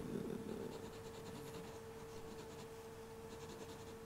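Quiet room with a steady faint hum and light, faint scratching sounds.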